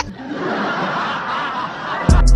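A group of people laughing together in a steady, blurred chorus of chuckles.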